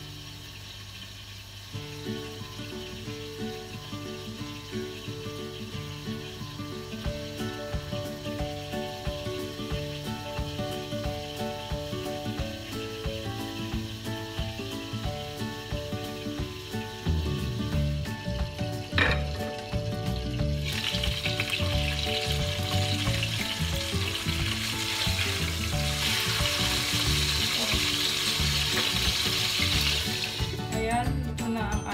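Tilapia frying in hot oil under a glass lid in a non-stick wok: a steady sizzle that grows clearly louder about two-thirds of the way through, heard under background music.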